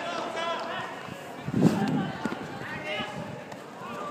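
Players calling out to each other during a small-sided football match, with one sharp thump about one and a half seconds in, the loudest sound: a football being kicked.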